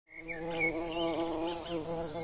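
An insect buzzing steadily, its pitch wavering slightly.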